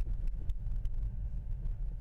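Tesla Model 3's stock 18-inch all-season tires rolling over packed snow as the car slows, heard inside the cabin as a steady low rumble with a few faint clicks.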